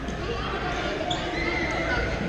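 Echoing hubbub of a busy indoor badminton hall: many overlapping distant voices with scattered knocks and squeaks of play from several courts at once.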